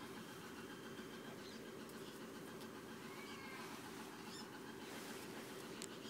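Jack Russell terrier puppy giving a short, high whine about three seconds in, with a few faint squeaks around it, over a low steady hum.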